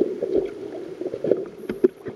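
Muffled underwater water noise: uneven gurgling and sloshing against a submerged camera, with a few sharp clicks near the end.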